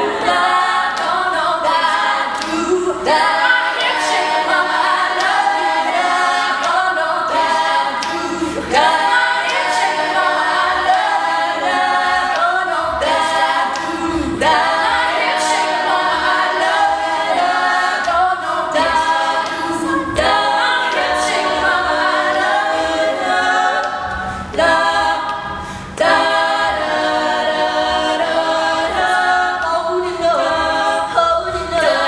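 Female a cappella vocal group singing in close multi-part harmony, with no instruments. The voices drop softer for a moment about five seconds before the end, then come back at full strength.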